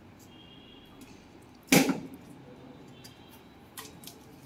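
A single short, loud scrape or swish a little under two seconds in, over low room noise with a few faint clicks.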